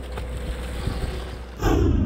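Steady low rumble of a boat's engine under wind and water noise. About one and a half seconds in, a loud whooshing musical sting cuts in.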